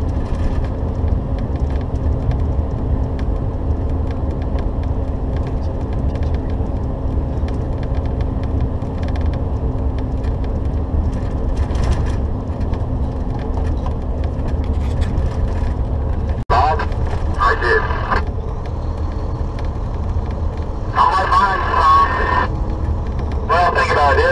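Steady low drone of a Volvo 670 semi truck's engine and tyres, heard inside the cab while cruising. Starting about two-thirds of the way in, short bursts of tinny CB radio chatter from the convoy cut in over it.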